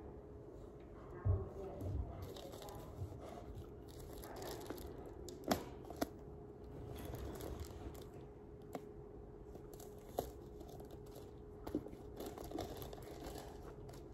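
Plastic wrap on a MacBook Air box being torn and crinkled by hand, with scattered light taps and clicks.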